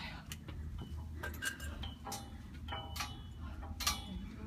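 A series of light, sharp clicks at an uneven pace, about a dozen in four seconds, over a low wind rumble on the microphone.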